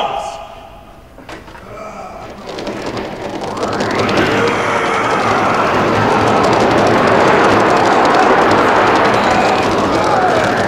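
Many voices shouting together in a staged battle charge, building up over a couple of seconds and then held loud and steady. A single knock comes about a second in.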